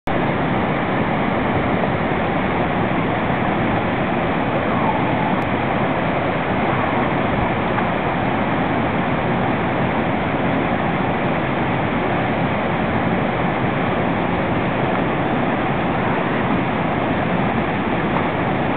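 River waterfall: white water pouring over rock ledges in a steady, loud rush.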